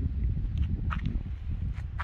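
Outdoor wind buffeting the microphone as a steady low rumble, with a few faint clicks.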